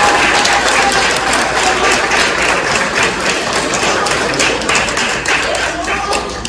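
Audience applauding: many hands clapping in a dense, steady patter that begins to die away near the end.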